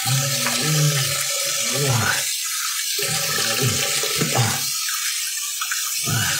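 Water running steadily from a tap into a sink, with a man's wordless vocal sounds over it twice.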